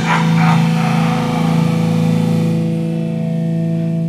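A live rock band's final chord: distorted electric guitar chord struck and left ringing through the amp. The high wash fades after about two and a half seconds while the low notes hold.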